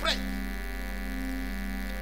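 Steady electrical mains hum through the sound system, a constant low drone with several fixed tones above it. It is left exposed once the single spoken word at the start ends.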